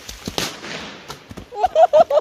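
A firework going off with one sharp bang about half a second in, a hiss trailing after it and a few smaller cracks, then loud laughter near the end.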